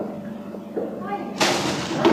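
A short voice-like sound followed about one and a half seconds in by a sudden sharp thump, over a steady low hum and hiss from an old VHS recording.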